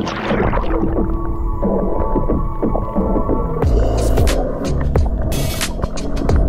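Water sound picked up by a camera going under the surface: a splash right at the start, then a muffled, heavy low rumble with scattered sharp clicks as the camera moves under water.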